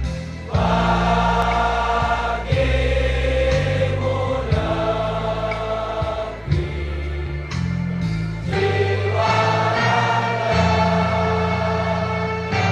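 A large group of young men singing together in chorus, slow, with held notes that change every second or two, over instrumental accompaniment with steady low bass notes.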